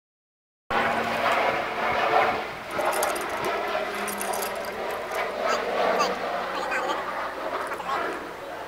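Silence, then under a second in the outdoor camera sound cuts in abruptly: indistinct voices talking, with no clear words, over a faint steady hum.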